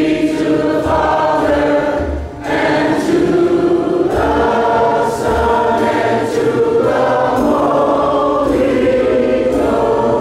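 A youth gospel choir singing long held chords, with a short break between phrases a little over two seconds in.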